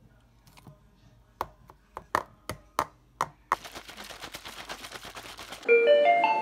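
Sharp plastic knocks and clicks, about six over two seconds, from handling a plastic shaker cup, followed by about two seconds of steady hiss. Near the end a music jingle with bright mallet-like notes begins.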